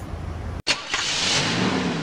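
Intro logo sound effect: after a hard cut about half a second in, a sudden loud burst of noise, with a low hum rising in pitch underneath near the end.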